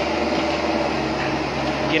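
Caterpillar 304E mini excavator's diesel engine running steadily close by, a constant even drone.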